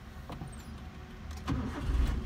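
A 2005 Suzuki Baleno's four-cylinder petrol engine starting: it catches about one and a half seconds in and runs on steadily at idle.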